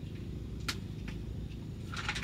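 Camper van engine idling, heard from inside the cabin as a low steady hum, with a single short click about two-thirds of a second in.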